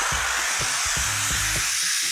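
Handheld steam gun jetting steam onto a car's rear window glass, a steady hiss. It is softening the adhesive of old tint film so the film can be peeled off over the defroster lines without a knife.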